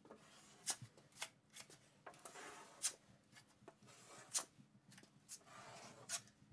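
Faint scraping of a drywall taping knife spreading joint compound onto drywall, with scattered sharp clicks and ticks between the strokes.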